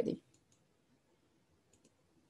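A few faint, short clicks of a computer mouse, two close together near the end, over quiet room tone.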